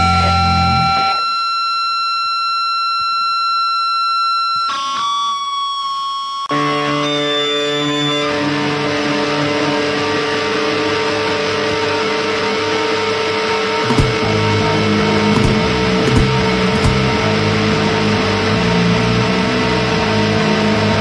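Live punk band's distorted guitar noise: about a second in, the full band drops out and sustained guitar feedback tones ring on their own, then about six and a half seconds in distorted bass and guitar crash back in under a steady droning feedback tone and a wash of noise.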